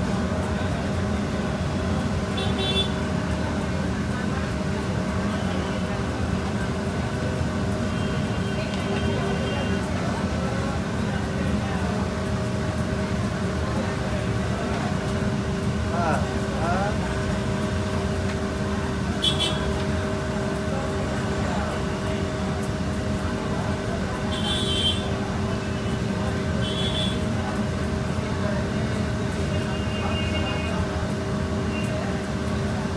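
Steady mechanical hum carrying a few constant tones, mixed with busy shop and street noise and indistinct voices, broken about four times by brief sharp clinks.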